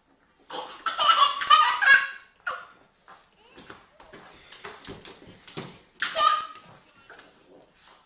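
Laughter in two high-pitched bouts: a long one from about half a second in to about two seconds, and a short one around six seconds.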